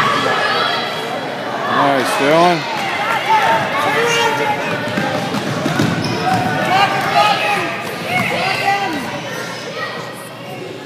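A basketball bouncing on a hardwood gym floor during a kids' game, with voices calling out throughout, echoing in the large hall.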